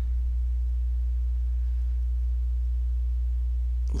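Steady low electrical hum, a deep buzz with a few overtones and nothing else over it. It is mains hum in the recording chain.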